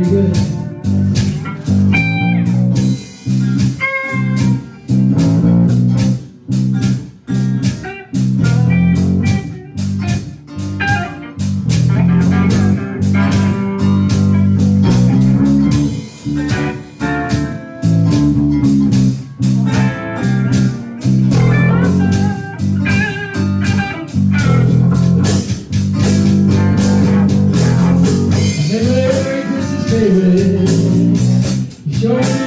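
Live band playing a blues shuffle: electric guitars over a stepping bass line and a drum kit keeping a steady beat.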